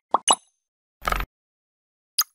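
Animated logo outro sound effects: quick pops in fast succession, then about a second in a single short burst of noise lasting about a quarter of a second.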